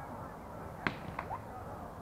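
A beach volleyball struck by hand in play: one sharp slap a little under a second in, then a lighter hit a moment later.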